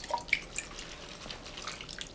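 Quiet table sounds of serving and eating noodles: a few light clicks of utensils against metal bowls, with liquid dripping from a ladle.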